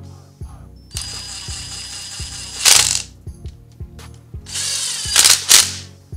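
Power driver fitted with a socket running the brake caliper's pad retaining pins in, in two runs of about one and a half to two seconds, each getting louder near its end as the pin tightens. Background music with a steady beat plays underneath.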